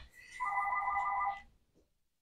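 A steady high electronic tone, joined about half a second in by a chord of three lower steady tones; all of them cut off together after about a second and a half.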